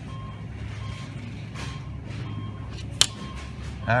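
Faint electronic beeping, short beeps repeating at an even pace, over a steady low hum, with one sharp click about three seconds in.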